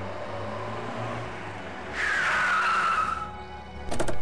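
A car drives up with a low engine hum and brakes to a stop, its tyres screeching in a falling squeal for a little over a second about halfway through.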